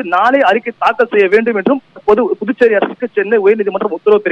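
Speech only: a man talking continuously over a telephone line, the voice narrow and thin.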